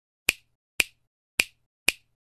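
Four sharp snap sound effects, about half a second apart, each marking a letter of an animated title appearing.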